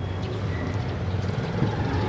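Steady street noise: a low, even rumble with a noisy hiss over it.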